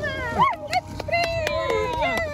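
A dog whining in high, wavering cries, eager to jump into the water but holding back at the edge.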